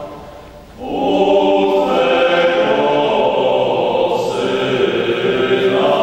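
Small men's vocal ensemble singing a cappella. The previous phrase dies away in the church's echo, and after a short breath the voices come in again about a second in with long held notes, changing chord twice.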